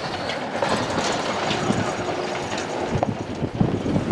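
Wind blowing across the microphone and flapping strings of cloth prayer flags: a dense, irregular rattling noise.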